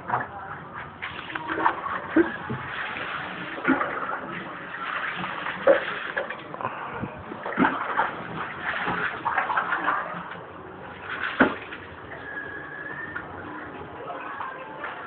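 A dog and a cat play-fighting: scuffling and shuffling with irregular knocks and clicks, the sharpest about six and eleven seconds in.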